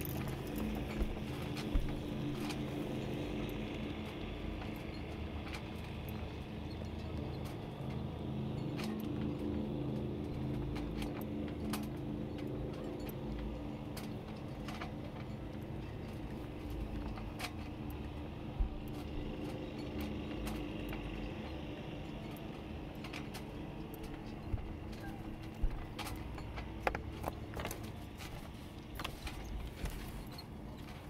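A steady low hum like a distant motor running, with scattered light clicks and knocks of rope and deck hardware being handled on a sailboat's bow.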